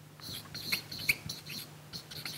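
Felt-tip marker squeaking on flip-chart paper as a word is written: a string of short, high-pitched strokes.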